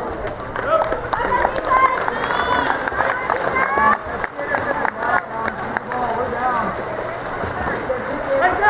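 Several voices shouting and calling across the pool over the steady splashing of water polo players swimming hard.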